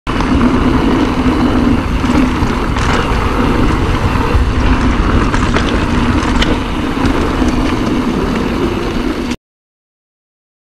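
Mountain bike rolling along a rutted dirt forest track, heard from the bike: loud, steady tyre and wind noise with a few sharp clicks and rattles. It cuts off suddenly a little before the end.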